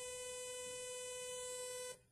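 Synthesized 500 Hz positive sawtooth test tone, a steady bright tone at one pitch, rich in both odd and even harmonics. It cuts off suddenly just before the end.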